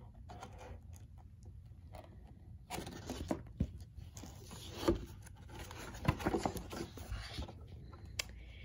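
A paper page of a picture book being turned and handled, rustling and scraping with a few soft knocks, starting about three seconds in.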